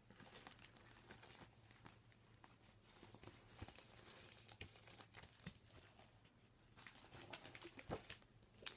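Faint crinkling of a clear plastic sleeve as a booklet is handled and slid in it, with a few soft clicks of paper and card.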